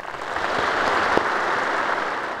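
Audience applause, building quickly over the first half second and then holding steady.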